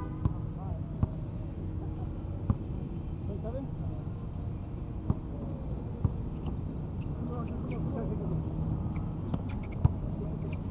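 A basketball bouncing on an outdoor hard court, heard as a handful of sharp, irregularly spaced thumps, the loudest near the end. Faint voices and a steady low hum lie underneath.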